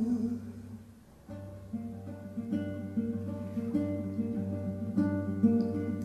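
Acoustic guitar picked in a short instrumental passage between sung lines. The sound dies almost away about a second in, then picked notes and chords start again and grow a little louder.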